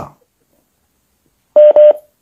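Two short, loud electronic telephone-style beeps at the same pitch, close together near the end, after a moment of silence.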